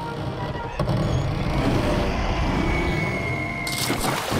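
Cartoon sound effects: a car engine running, with a thin, steady high tone through the second half. A sudden splash into water comes near the end.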